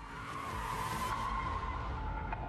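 Car tyres screeching as a sports car skids, a held squeal that sinks slightly in pitch over a low engine rumble that swells about halfway through.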